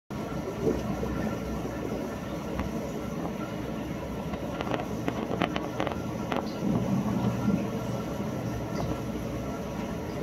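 Aquarium pumps and circulating water running with a steady low hum and rushing noise, with a few faint clicks in the middle.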